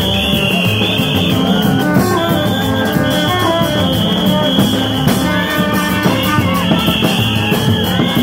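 Live gagá band playing loudly, with drums beaten with sticks in a fast, dense rhythm and a steady high tone held over them that breaks off a few times. The recording is close and distorted.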